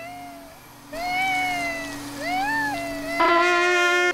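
A cartoon baby crying in rising and falling wails over the steady hum of a vacuum cleaner; a little after three seconds in, a trumpet starts blowing a loud held note.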